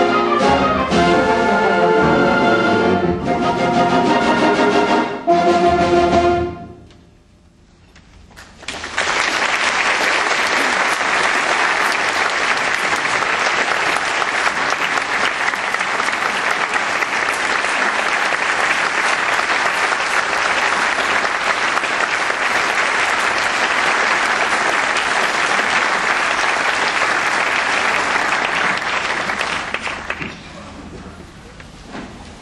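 A symphonic band with prominent brass plays the last chords of a piece, which stop about six seconds in and ring away in the hall. About two seconds later the audience breaks into steady applause.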